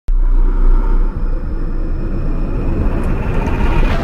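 Deep cinematic rumble of a logo-intro sound effect that starts abruptly and builds into a swell near the end.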